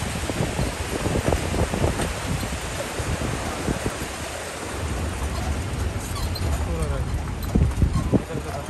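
Outdoor ambience of rushing river water and wind on the microphone, with people's voices in the background and scattered short knocks.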